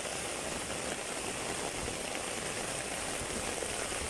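Heavy rain falling steadily on foliage and ground, an even hiss that holds at one level throughout.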